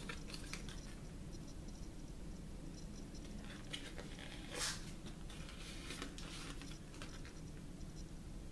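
A paper paint chip card drawn across wet acrylic paint on a canvas: faint, intermittent scraping, with one louder brief scrape a little past halfway.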